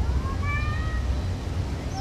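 Low steady rumble of a departing diesel passenger train, mixed with wind on the microphone. Over it, a short, high, slightly rising cry comes about a quarter second in and lasts under a second.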